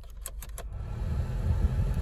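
Heater blower fan of a 2007 Vauxhall Corsa switched on at its rotary speed knob: a few clicks of the knob in the first second, then a rush of air from the vents that grows louder as the fan speeds up. The car's 1.2 petrol engine idles underneath.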